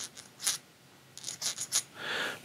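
A tang bolt being run through the threaded hole in a muzzleloader's trigger plate, its metal threads scraping in short strokes: the threads are being chased to clear burrs. There is one scrape about half a second in, then several quick ones in the second half.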